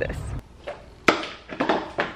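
A few sharp knocks and thumps in a small room: one loud hit about a second in, then several lighter taps.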